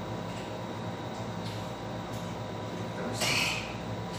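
Steady low room hum with a few constant faint tones, and a short hiss or rustle about three seconds in.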